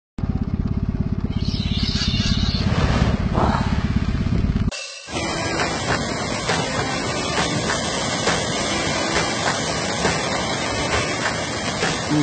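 A loud, fast-pulsing low rumble for the first four and a half seconds, which cuts off suddenly. It gives way to a steady wash of surf and splashing water as a flock of pelicans plunge-dives into the breaking waves.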